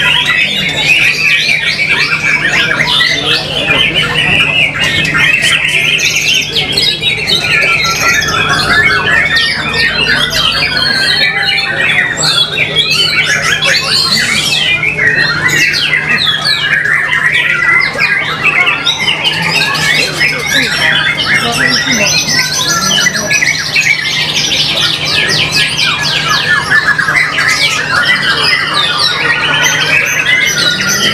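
White-rumped shama (murai batu) singing a continuous stream of fast, varied phrases without a pause.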